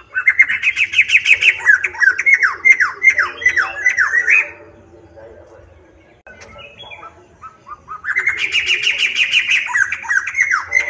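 Caged black-throated laughingthrush (poksai hitam) singing loudly: a fast run of whistled notes, many sliding downward, for about four and a half seconds. A pause with a few soft notes follows, then a second run starts about eight seconds in.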